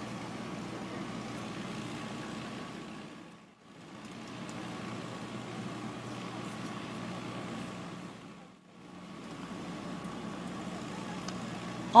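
Steady background hum of idling vehicle engines. It twice drops away to near silence for a moment, about three and a half seconds in and again past the middle.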